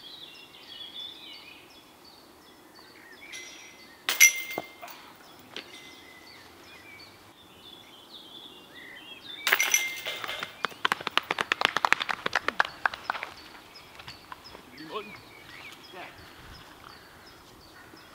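Disc golf putts striking the chains of a metal basket: one sharp clank with a short ring about four seconds in, then a second disc hitting the chains halfway through, with the chains jangling and clinking for about three seconds as it drops in. Birds sing faintly throughout.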